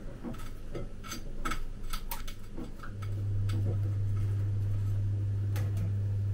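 Light, irregular clicks and taps of a metal food tin being handled and turned in the hand. A steady low hum comes in about three seconds in and carries on.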